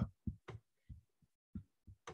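Near silence with about five faint, short low thuds spaced irregularly.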